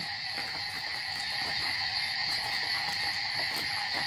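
Night chorus of crickets and other insects: a steady, high-pitched trill that goes on without a break.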